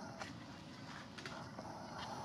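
Outdoor background noise with a few faint sharp clicks, about a second apart.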